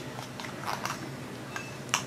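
Small clicks and rustles of a fountain pen and a sheet of paper being handled on a desk as the pen's screw cap is taken off. There is a sharper single click near the end.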